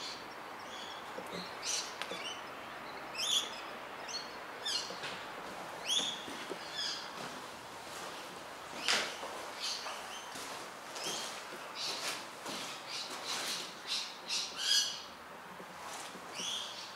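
Birds calling outdoors: a string of short, irregular calls, more crowded near the end, with the loudest ones about 3, 6, 9 and 15 seconds in.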